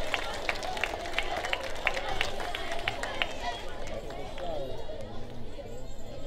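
Audience clapping dying away, the scattered claps thinning out about halfway through, over a steady murmur of crowd chatter.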